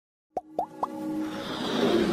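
Animated logo intro sound effects: three quick pops rising in pitch, about a quarter second apart, then a swelling whoosh over sustained synth tones.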